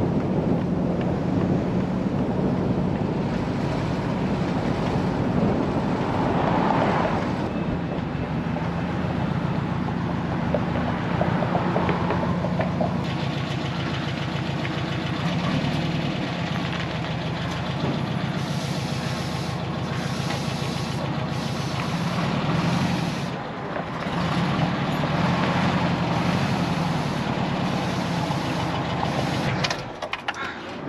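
Air-cooled flat-four engine of a 1978 VW Westfalia bus running as the van drives, its note rising and falling with speed.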